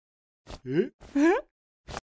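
A short pop, then two wordless vocal exclamations of surprise rising in pitch, cartoon-style, with another short click near the end.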